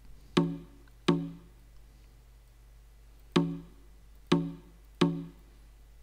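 Sampled conga from an Ableton Live drum kit, struck five times at the same pitch with uneven gaps: two hits close together, a pause of about two seconds, then three more.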